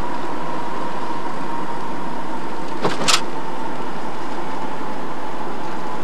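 Steady road and engine noise inside a moving car's cabin, with a faint steady whine running through it. Two short sharp clicks come about three seconds in.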